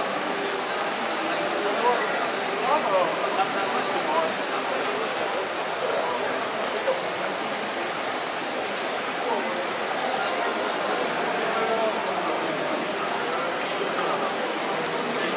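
Indistinct chatter of many people echoing in a large hall, a steady babble of overlapping voices with no one voice standing out.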